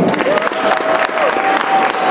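An audience applauding, many people clapping at once.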